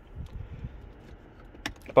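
Quiet car cabin with faint handling of the dashboard controls and a single sharp click near the end.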